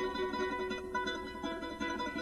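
Solo harp playing: plucked notes ringing on and overlapping one another, the instrumental opening of a song.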